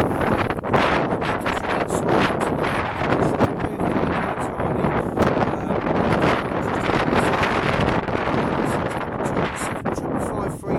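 Wind buffeting the microphone in steady, loud gusts, a rough rushing noise with irregular blasts throughout.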